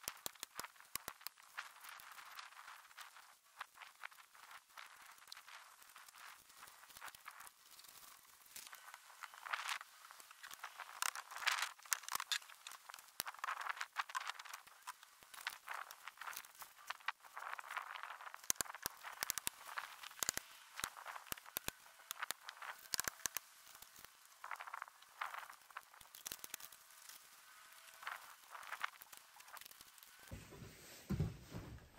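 Plastic sheeting rustling and crinkling as it is handled, with many short sharp clicks and taps scattered throughout.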